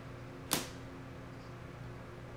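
A single sharp tap about half a second in, a hand setting a tarot card down on a wooden tabletop, over a faint steady hum.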